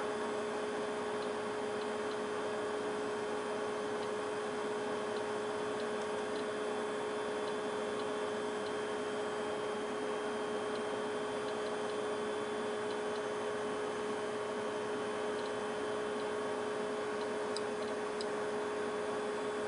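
Steady electrical hum with faint ticking about once a second. Near the end comes one sharp click from the alpha counter's piezo as it registers a single count.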